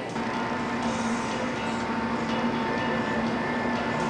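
Coin-operated peep-show booth machine running after a coin goes in: a steady mechanical hum with a low and a higher tone over a rough noise.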